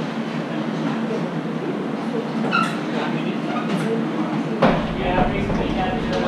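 Busy restaurant kitchen during service: a steady drone under background voices and occasional clinks of metal and crockery. A knock about two-thirds of the way through, after which a low rumble sets in.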